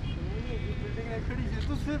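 Men's voices talking close by over a steady low rumble of city traffic.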